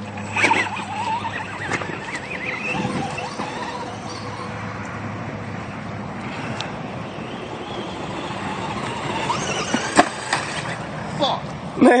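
Radio-controlled truck driving over grass and rocks, its motor whining and wavering up and down in pitch, with a sharp knock about ten seconds in.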